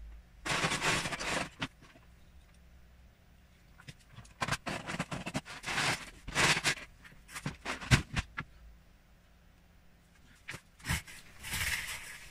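Loose plastic Lego bricks rattling and clattering in a plastic storage tub as a hand rummages through them, in several bursts with quiet pauses between and a few sharp clicks of single pieces.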